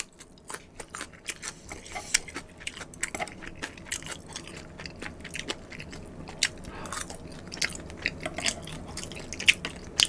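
Close-miked chewing of a raw green chili pepper: irregular wet crunches and mouth clicks. Later comes a mouthful of spicy stir-fried noodles, with a sharp click near the end.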